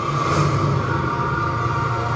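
Film-trailer orchestral score holding a steady sustained chord over a low drone.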